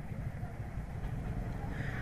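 Steady low background hum and hiss of the recording, with no distinct event.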